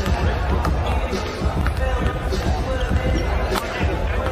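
Basketballs bouncing on a hardwood arena court, irregular thuds over steady low arena rumble and background voices.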